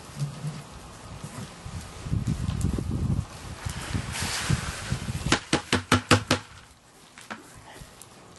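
Soaked barley dumped from a white plastic bucket into a bin: a low rumble of handling, then a rushing slide of wet grain. About five seconds in there is a fast run of about seven sharp knocks.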